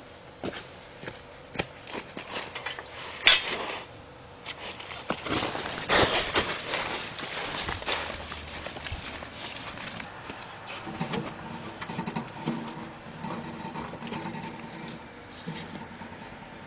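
Footsteps and rustling of a person walking outdoors, with scattered clicks and knocks; one sharper knock comes about three seconds in.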